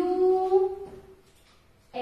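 A woman's voice drawing out the letter "U" as one long, slightly rising note while spelling a word aloud. It ends about a second in, followed by a short pause.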